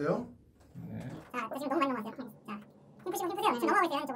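Men's voices in short, unclear phrases, starting about a second in, with a pause in the middle.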